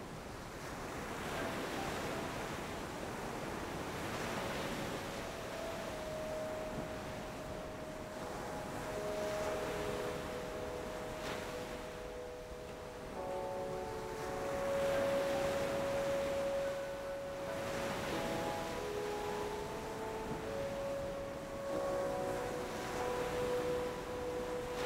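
Soft dramatic underscore of long held notes that come in after a few seconds and fill out toward the middle, over a wash of noise that swells and fades like surf.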